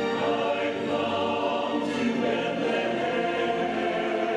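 A choir singing in harmony in long held notes, moving to a new chord about two seconds in.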